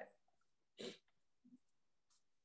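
Near silence on a video-call line, broken by one short breath from a speaker a little under a second in.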